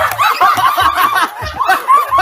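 A group of young people laughing and squealing together, many high-pitched voices overlapping at once.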